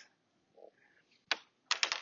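Sharp plastic clicks of ball-and-stick molecular model pieces being handled. One click comes past the middle, then a quick run of about four clicks near the end.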